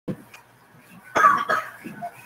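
A person coughing twice, about a second in, in short harsh bursts.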